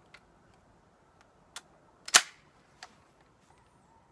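Chiappa M1-9 9mm carbine's action worked by hand to clear a failure to feed: a few faint metallic clicks, with one sharp, louder metallic snap about two seconds in.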